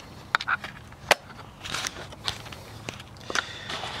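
Handling noise and footsteps while a handheld camera is carried: a scatter of short sharp clicks with brief rustles between them.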